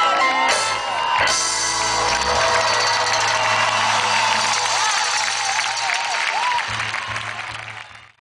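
Live pop-rock band playing to a large crowd, with crowd noise mixed into the music. The sound fades out over the last second or so.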